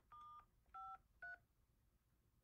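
Telephone keypad touch-tones: three short two-tone beeps in quick succession, each a different key, keyed in to turn off a conference call's mute function.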